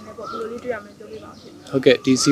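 A man speaking in Burmese, with a bird calling in the background.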